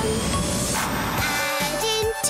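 Cartoon rocket blasting off: a rushing whoosh for about the first second and a half, over upbeat children's music that carries on alone near the end.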